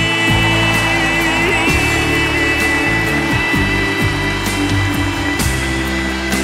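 Instrumental close of a ballad's backing track, a held high note over bass, under steady audience applause.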